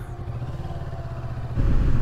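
Kawasaki Versys 650's parallel-twin engine running under way, heard from the rider's seat: a steady low rumble that grows louder about one and a half seconds in.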